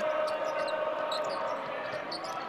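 A basketball being dribbled on a hardwood court, over steady arena background noise.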